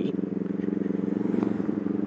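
Motorcycle engine running steadily at cruising speed, a constant drone that holds one pitch.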